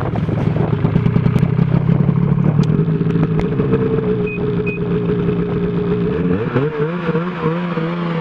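Snowmobile engine running steadily at close range. About six and a half seconds in, its pitch starts rising and falling as the throttle is worked.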